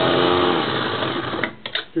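Krups electric mini chopper running under a pressed-down lid, its blades chopping carrot and apple pieces. The motor runs steadily and then winds down and stops about one and a half seconds in.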